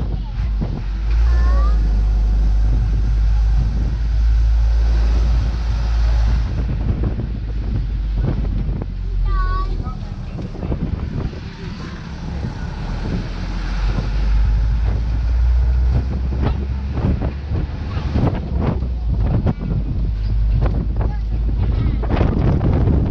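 Wind buffeting the microphone and the rumble of an open-sided tour truck driving along a paved road, with a deep steady drone and fluttering noise throughout.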